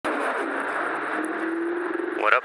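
Riding an Ariel Rider X-Class 72 V electric bike at speed: a steady rush of wind and road noise, with a faint motor whine that climbs slightly in pitch in the second half.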